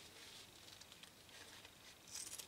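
Near silence: room tone with a few faint light ticks from handling a shoe and scissors.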